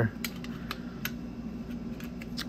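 A scattering of small, sharp clicks and ticks from handling little bags of knife pivot bearings over an open metal tin.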